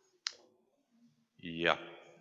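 A single sharp click a quarter of a second in, then, about a second and a half in, a man's short voiced sound falling in pitch, picked up by the lectern microphone.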